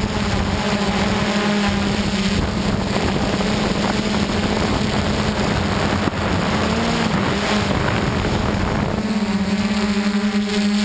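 DJI Flame Wheel F550 hexacopter's brushless motors and propellers humming at a steady pitch, heard from the camera on the craft. A rushing wind noise covers much of the hum from about two seconds in, and the clear tone returns near the end.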